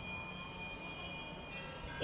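Faint, steady bell-like ringing made of several high tones held together, fading out near the end.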